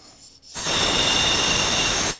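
Compressed shop air blown through an air-conditioning hose and its fitting to clear debris from the tube: a loud, steady rush of air with a thin whistle on top, starting about half a second in.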